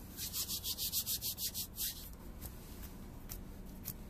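Powder-coated hands rubbing briskly together, a fast run of dry, hissing strokes, about eight a second, lasting nearly two seconds.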